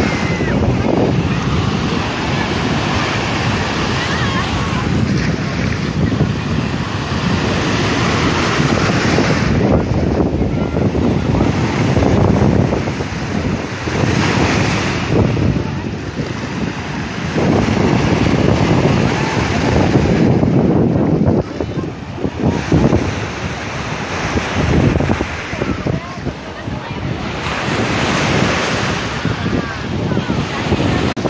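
Sea surf breaking and washing up over sand at the shoreline, a steady rush of water that swells and ebbs every few seconds, with wind buffeting the microphone.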